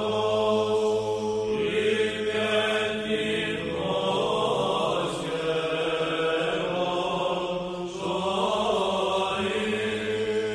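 Greek Orthodox Byzantine chant. A melodic vocal line moves over a steady low held drone note.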